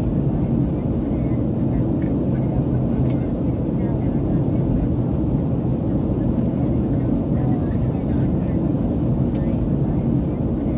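Steady cabin noise of a Boeing 737 airliner in flight, heard from a window seat over the wing: an even, low rumble of the jet engines and rushing air, with a low hum underneath.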